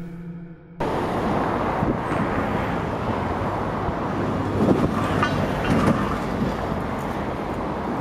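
Steady road traffic noise, with wind rumbling on the microphone, starting abruptly about a second in.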